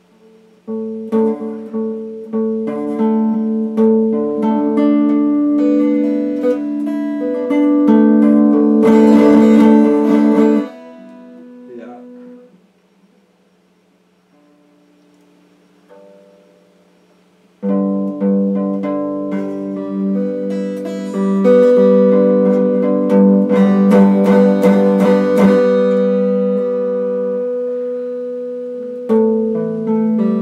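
Electric guitar playing held chords that ring out, with a faster strummed passage that stops sharply about ten seconds in. After a pause of several seconds the chords start again, with another strummed stretch and then a chord left to ring and fade near the end.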